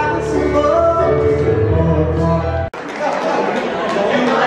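Live piano with singing, which breaks off abruptly about two and a half seconds in and gives way to crowd chatter in a large room.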